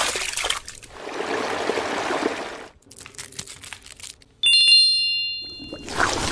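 A stretch of hiss and scattered clicks, then a bright bell-like ding about four and a half seconds in that rings on and fades over about a second and a half.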